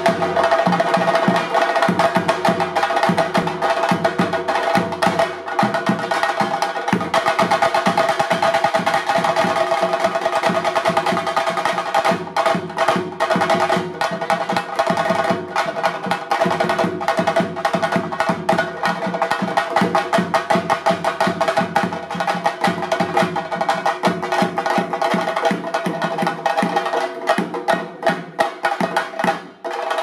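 Chenda drums beaten with sticks in a fast, dense, unbroken roll, the sharp cracks of the sticks on the drumheads coming several times a second, over a steady held tone.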